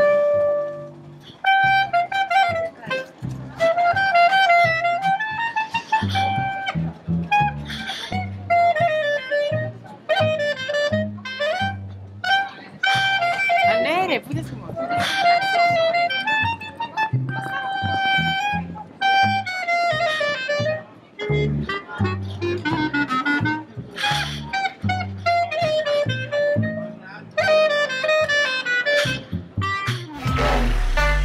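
Clarinet and double bass playing a jazz tune live: the clarinet carries a flowing melody over plucked bass notes.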